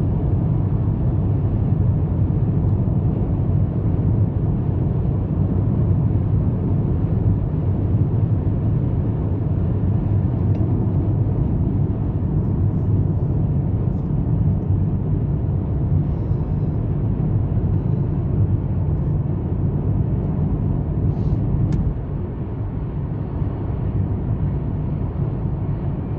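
Steady road and engine noise inside a car's cabin as it cruises along a highway: a continuous low rumble that dips a little in level a few seconds before the end.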